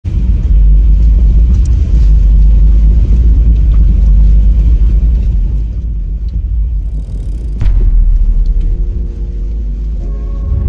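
Heavy low rumble inside a vehicle's cabin as it drives slowly over a rutted, muddy forest track. The rumble eases for a moment, then a sharp knock comes a little over seven seconds in and the rumble returns.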